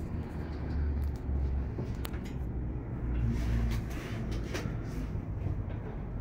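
Low, steady rumble heard inside a moving Emirates cable car gondola, with a couple of sharp clicks.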